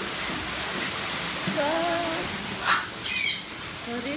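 A parrot gives a short, high squawk about three seconds in, over a steady background hiss.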